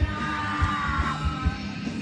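Live band playing loud rock with the singer yelling into the microphone over a steady drum beat; the vocal slides downward in the first second.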